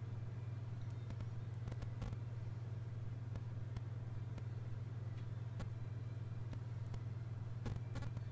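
A steady low hum, with a few faint clicks and taps scattered through it.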